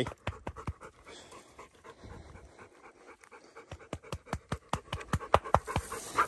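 Redbone coonhound panting hard close by, a quick run of short breaths that comes thicker over the last couple of seconds.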